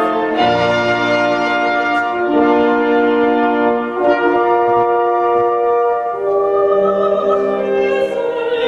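Symphony orchestra playing slow, sustained chords that change every second or two, with the brass to the fore, accompanying a soprano in a late-Romantic art song.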